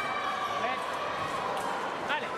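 Busy fencing-hall background of voices, with a few short rubber-sole squeaks on the piste.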